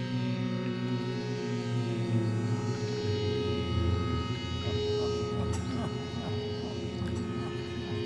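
Electric zither played through effects as ambient music: many held, ringing tones layered over a low drone, with a few short plucked notes around the middle.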